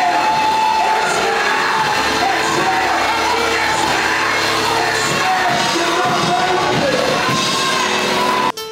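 Live church praise music from a band with drums and keyboard, with voices singing and a congregation shouting along.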